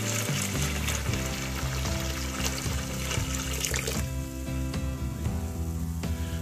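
White vinegar pouring from a plastic jug into a plastic tub of liquid, stopping about four seconds in. Background music plays underneath.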